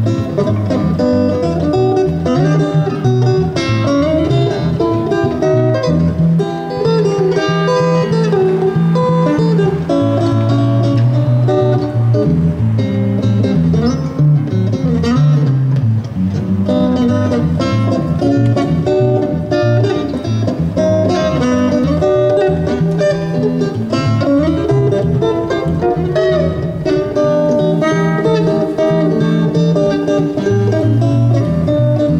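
Electric guitar through a small amplifier playing an instrumental solo, with running single-note melody lines over sustained low notes.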